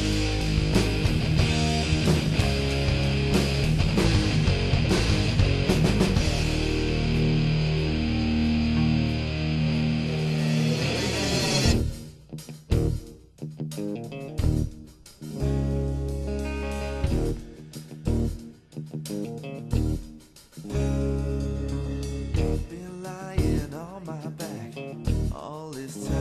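Instrumental section of a rock song: a full band with guitar playing loudly. About twelve seconds in it suddenly drops to sparse, stop-start hits with short silent gaps, then settles into steadier, quieter playing.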